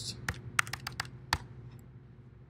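Keystrokes on a computer keyboard: about seven separate key presses at an uneven pace as a web address is typed and entered, one of them sharper than the rest a little past the middle.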